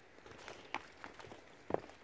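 A few soft footsteps on the wooden planks of a footbridge, the two clearest about a second apart.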